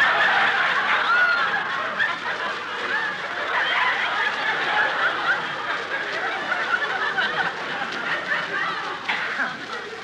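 Studio audience laughing, a long, sustained wave of laughter from many people that slowly fades toward the end.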